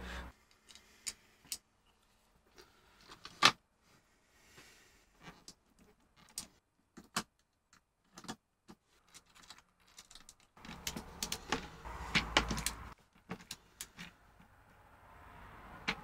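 Small metal M3 nuts and screws clicking and clinking as they are picked up by hand and fitted into a clear acrylic frame, in scattered single clicks. A busier spell of clicks and handling noise comes about two-thirds of the way in.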